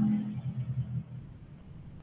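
A man's low, drawn-out hesitation sound that trails off about a second in, followed by faint background noise.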